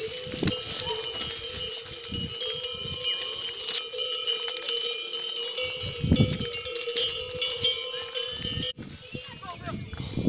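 Bells on pack yaks ringing and clinking steadily as a yak train walks. The ringing cuts off abruptly near the end.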